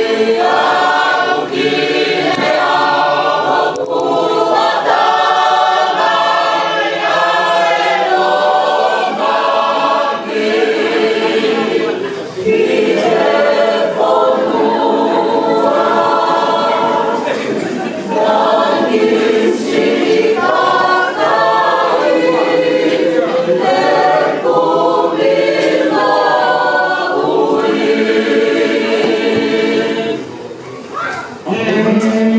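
Church choir singing a Tongan hymn (polotu) in several-part harmony, in long sustained phrases with brief breaks between them.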